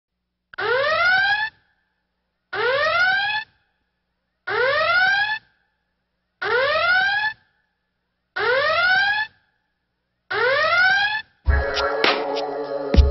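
A synthesized alarm-like tone that sweeps upward in pitch for about a second, sounding six times at two-second intervals with silence between. Electronic music with a heavy bass begins near the end.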